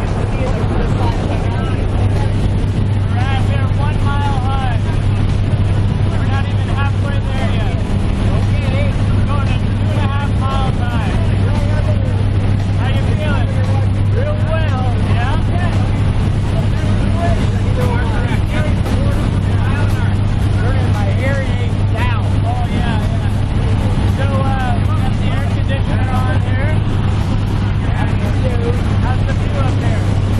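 Steady low drone of a small propeller plane's engine heard inside the cabin in flight, with voices talking over it.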